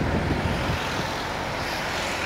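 Steady road traffic noise from a nearby street: an even low rumble of passing cars and trucks.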